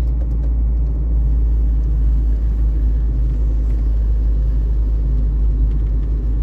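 Steady low rumble of a car driving along a paved road, heard from inside the moving car.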